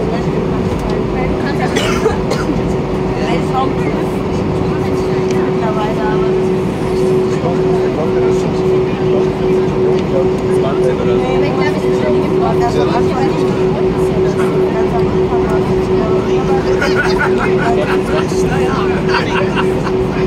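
Cabin sound of an Airbus A319 taxiing: the engines' steady hum with one constant droning tone, which begins to waver rapidly about seven seconds in. Indistinct passenger voices sit underneath, most plainly near the end.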